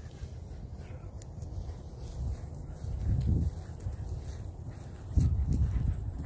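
Low rumble of wind buffeting a phone microphone outdoors, swelling about three seconds in and again near the end, with a few faint ticks.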